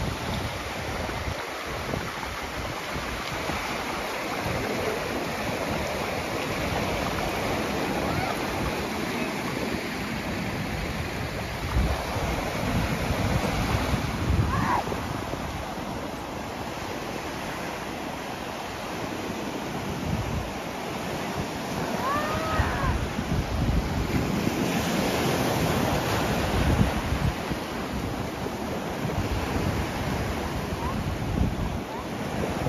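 Sea waves breaking and washing up a pebble shore, with gusts of wind buffeting the microphone.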